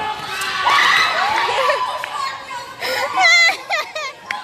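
Children shouting and cheering together, many young voices overlapping, with one loud, high, wavering scream about three seconds in.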